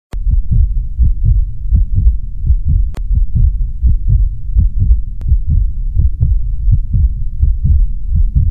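Intro sound effect of an animated logo reveal: a fast run of deep, low thumps like a heartbeat, about four a second, with a few sharp clicks, the loudest near the start and about three seconds in.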